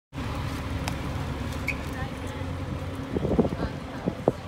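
Parked fire engine idling, a steady low hum. A voice sounds briefly near the end.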